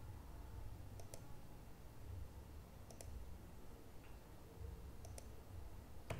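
Faint computer mouse clicks: a pair about a second in, one near three seconds and another about five seconds in, as lines are picked for extending in AutoCAD, over a low steady room hum.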